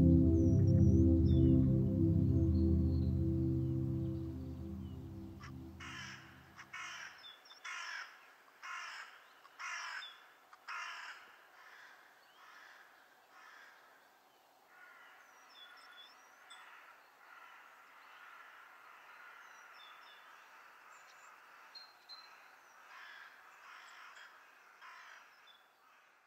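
A low drone with several layered tones fades away over the first several seconds. A crow then caws about eight times in a row, roughly one call a second, followed by fainter, more continuous cawing with small high bird chirps before the sound cuts off.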